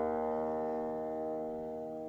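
Bassoon and piano music: a held chord slowly dying away.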